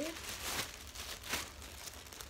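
Thin clear plastic packaging bag crinkling as it is handled, with two louder crackles, about half a second and just over a second in.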